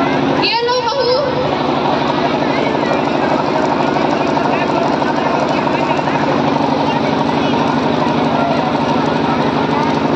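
A steady, loud motor drone with a fast even pulse and a low hum runs under indistinct voices, with one short raised voice about half a second in.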